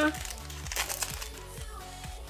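A Pokémon TCG booster pack's foil wrapper being torn open and crinkled by hand, over background music with a steady beat.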